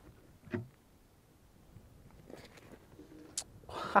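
RTIC hard-sided cooler being opened: its rubber T-latches unclipped and the lid lifted, with a dull knock about half a second in, a few light clicks, and a sharp click shortly before the end.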